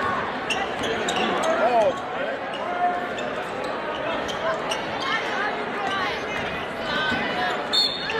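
A basketball being dribbled on a hardwood gym floor, a string of bounces, under the steady chatter and calls of a crowd in a large gym.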